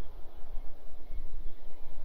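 Low, uneven rumble of wind buffeting the microphone, with no other clear sound.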